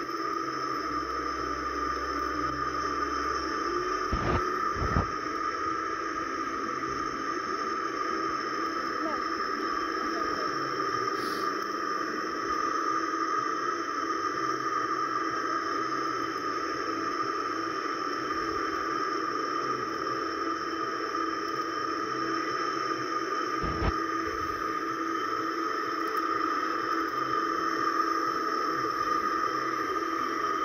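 A steady, dense jumble of sound from a laptop's speakers, where several YouTube videos seem to be playing at once and blur into a constant drone with held tones. A few short clicks come about four, five and twenty-four seconds in.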